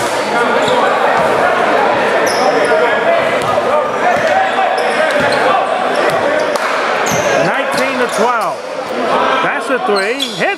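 Basketball game in a large, echoing gym: the ball bouncing on the hardwood court and sneakers squeaking, over steady chatter from the crowd. The squeaks come in several short gliding bursts in the last few seconds.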